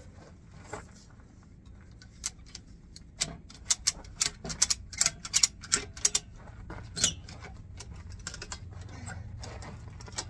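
Ratchet strap being cranked tight: quick runs of sharp metallic clicks from the ratchet, thickest through the middle and thinning to a few scattered clicks toward the end.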